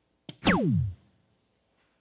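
A soft-tip dart strikes a DARTSLIVE electronic dartboard with a sharp click. The board answers at once with its electronic hit sound for a single 20, a tone that falls steeply in pitch for about half a second.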